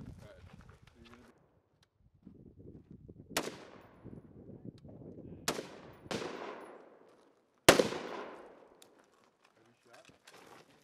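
Four single rifle shots at uneven intervals, each followed by a fading echo, the last one the loudest.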